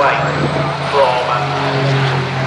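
Distant racing trucks' diesel engines, a steady low drone, under public-address race commentary.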